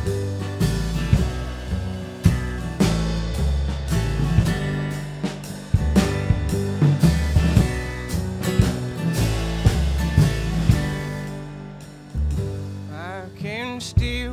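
Instrumental break in a live country-blues song: an acoustic guitar is strummed over walking upright-bass notes and a drum kit keeping a steady beat.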